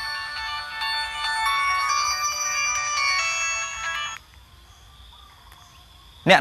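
A phone ringtone: a melody of clear electronic tones, cut off abruptly about four seconds in.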